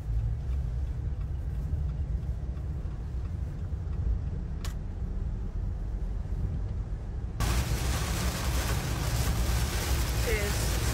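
Car cabin noise while driving on wet roads: a steady low road-and-engine rumble. About seven seconds in, it switches abruptly to a louder, even hiss of rain on the car over the same rumble.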